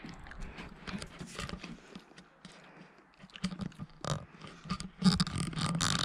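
Wet mouth sounds of someone eating a spoonful of mayonnaise: irregular smacking and small clicks. In the last second or so there are muffled closed-mouth voice sounds.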